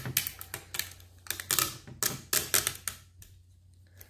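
Fingernails rubbing quickly back and forth over vinyl lettering on a plastic plate, pressing the decal down. The result is a run of short scratchy strokes that stops a little after three seconds in.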